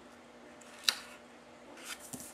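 Hands handling sheets of cardstock on a tabletop: one sharp click about halfway through and a short paper rustle near the end.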